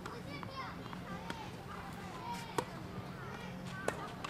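Background chatter of children's voices, with a sharp pop of a tennis racket striking the ball about two and a half seconds in and another hit near the end.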